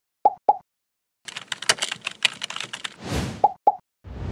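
Cartoon sound effects for an animated logo: two quick plops, a pause, a fast run of clicks lasting about two seconds, then a whoosh and two more plops near the end.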